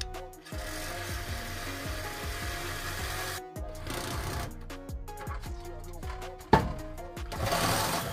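Cordless reciprocating saw cutting metal under a pickup truck, most likely through the exhaust at the catalytic converter. It runs in two bursts, from about half a second in until about three and a half seconds, and again near the end. A sharp clank comes about six and a half seconds in.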